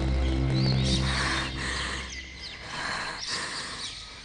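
Background score of a low sustained drone that fades out about halfway through, with birds chirping over it.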